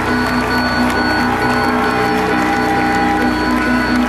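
Live rock band playing through an arena PA, loud and steady, with sustained chords held through and no singing.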